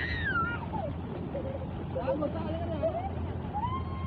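Water gushing steadily from a tubewell pipe into a concrete tank, with voices calling out and exclaiming in gliding tones over it.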